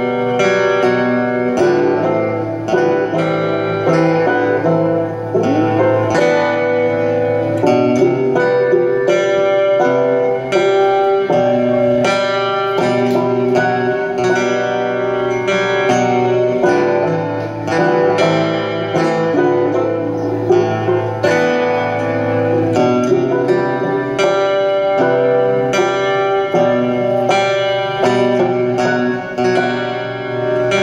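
Acoustic guitar and banjo playing an instrumental passage together live, a steady stream of plucked notes with no singing.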